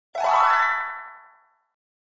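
A short synthesized 'boing' sound effect for a channel logo: a quick upward bend in pitch, then a ringing tone that fades away within about a second and a half.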